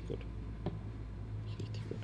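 A man's voice ends a word right at the start, followed by a pause filled with a steady low hum. A single soft click comes just past the middle, and a short breathy mouth sound comes near the end.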